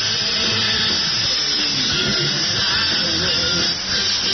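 Loud music with guitar, playing without a break.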